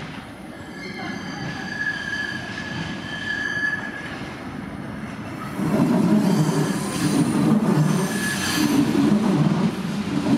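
A Bombardier Talent diesel railcar arriving. Its wheels give a steady high-pitched squeal in the first few seconds, then from about six seconds in a louder rumble of wheels on rail comes as it passes close, with a brief squeal again near the end.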